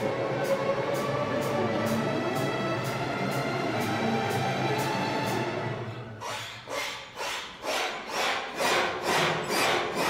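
A large string orchestra plays: violins, violas, cellos and basses hold a dense, sustained passage. About six seconds in it switches to short, loud accented strokes, about two a second.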